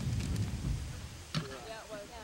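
Wind buffeting the microphone in low, uneven gusts, easing off about halfway through. A sudden sound follows, then voices talking in the background.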